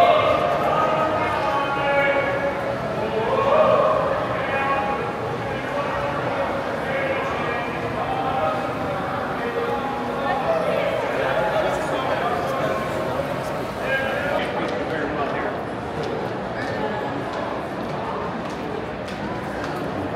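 Indistinct crowd chatter, many voices overlapping in a large indoor hall. In the second half, sharp clicking footsteps on a hard floor join in.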